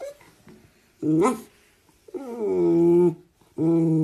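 Dachshund whining in drawn-out pitched calls: a short one about a second in, then a longer one that starts higher and slides down before holding steady, and another beginning near the end.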